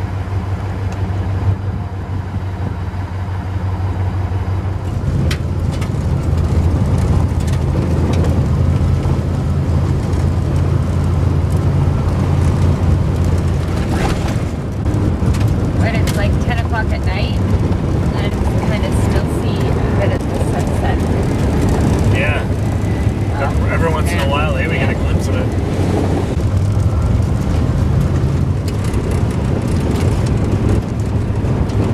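Camper van driving on a rough gravel road, heard from inside the cabin: a steady low engine and tyre drone with scattered knocks and rattles from the road surface. The drone grows louder about five seconds in.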